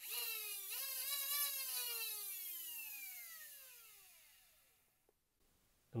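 A pair of brushed DC flywheel motors (3S Krakens) in a Nerf flywheel cage, driven through a MOSFET board from a 3S LiPo, spin up with a high whine for about a second and a half. They then coast down, the whine falling steadily in pitch and fading out about five seconds in.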